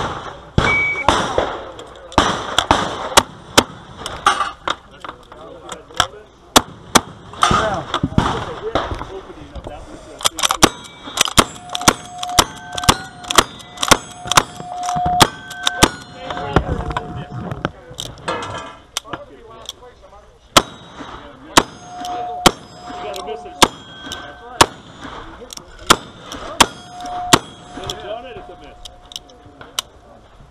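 Rapid gunfire from a revolver and a long gun: dozens of shots, often less than a second apart, each hit on the steel targets followed by a short ringing clang. The pace is densest in the middle and thins briefly before picking up again.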